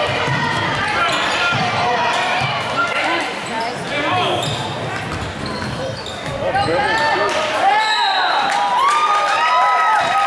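A basketball bouncing on a hardwood gym floor during play, mixed with players' and spectators' voices calling out in the hall. The calls grow busier over the last few seconds.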